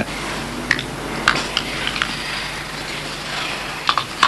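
A few separate, faint metallic clicks over a steady low background hum as a semi-automatic pistol is handled and loaded.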